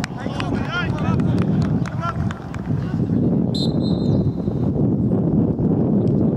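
A referee's whistle blown once in a sharp blast of about a second, roughly three and a half seconds in, restarting play from a dead ball. Players' shouts come before it, over a constant low outdoor rumble.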